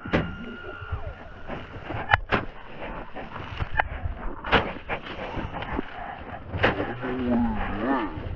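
Roman candles firing: about six sharp pops at uneven intervals, two of them close together a couple of seconds in. A person's drawn-out low voice is heard near the end.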